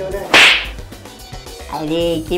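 A single sharp swish sound effect: one short, loud hiss that snaps in about a third of a second in and fades within half a second.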